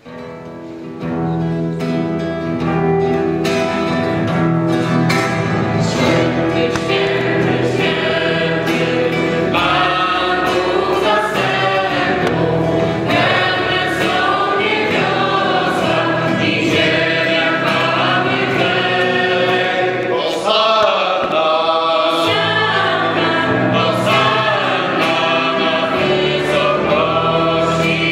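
A mixed choir of men and women singing a worship song, accompanied by a strummed acoustic guitar, starting about a second in.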